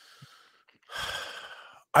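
A man's sigh: a faint breath at first, then a breathy exhale of about a second, with speech starting right after it.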